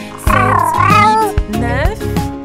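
A cartoon kitten's meow, long and wavering, heard over backing music with a steady beat.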